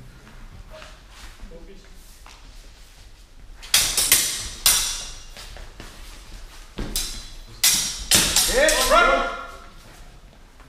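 HEMA practice swords clashing blade on blade in an exchange: three sharp strikes about four to five seconds in, then a quicker run of clashes near the end, echoing in a large hall. A short shout follows the last clashes.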